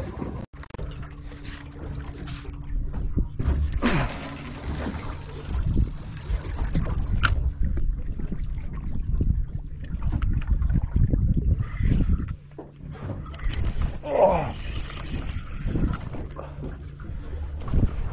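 Water sloshing and gurgling against a small boat's hull, over a steady low rumble and faint hum. A brief hissing rush comes about four seconds in.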